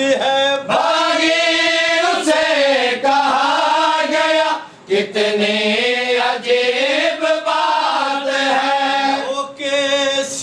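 Unaccompanied men's voices chanting a noha, a Shia lament, in long held, wavering notes, with a brief pause for breath a little before halfway.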